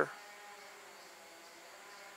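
A flying insect buzzing faintly and steadily close to the microphone.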